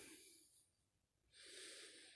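Near silence, broken about a second in by one faint, short breath drawn by the speaker between phrases.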